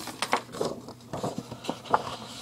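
Paper and hands scraping and tapping on a tabletop close to the microphone, a run of short, irregular scrapes and taps as a pencil-drawn sheet is handled.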